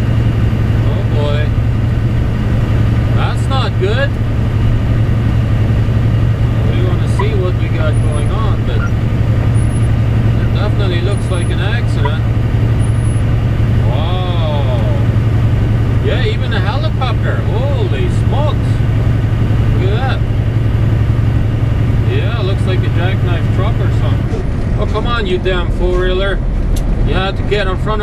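Semi-truck's diesel engine droning steadily in the cab while cruising on the highway. A few seconds before the end the drone drops to a lower note as the truck slows.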